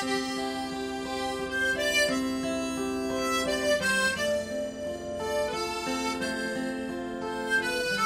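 Suzuki harmonica playing a slow melody in long held notes, accompanied by a Martin DM acoustic guitar strung with extra light strings.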